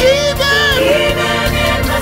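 Contemporary gospel song: a vocal group sings held, wavering notes over steady instrumental backing.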